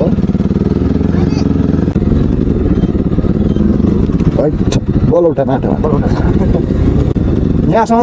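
Motorcycle engine running close to the microphone as the bike rides slowly along, a steady low beat of rapid firing pulses. A voice is heard briefly about halfway through.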